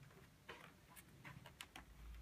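Near silence: quiet room tone with a few faint, sharp ticks, several of them close together in the second half.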